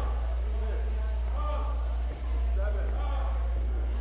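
A steady low hum, briefly dipping about two seconds in, under faint background voices.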